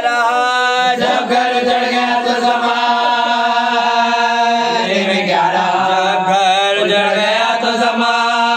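Urdu Shia lament (marsiya) chanted without accompaniment by a lead male voice with a group of young men joining in. The voices hold long, drawn-out notes that glide slowly up and down.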